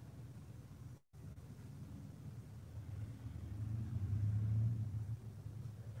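A low rumble that swells and is loudest about four to five seconds in, with a brief total dropout of the sound about a second in.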